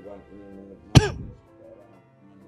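A man coughs once, sharply, about a second in; it is the loudest thing here and is picked up close on a handheld microphone. Steady background music plays under it.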